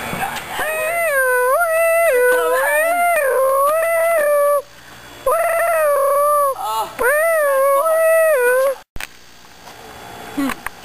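Long, high-pitched howling in held notes that step up and down like a tune, in two runs with a short break about halfway, then cuts off suddenly.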